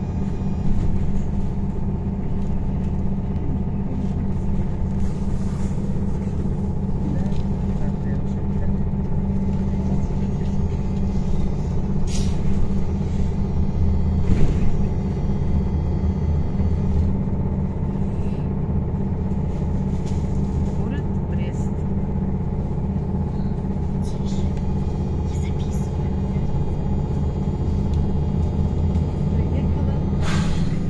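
Cabin noise inside a moving MAZ 103T electric trolleybus: a steady low rumble of the wheels and road with a constant hum, and a few brief knocks, the loudest about halfway through.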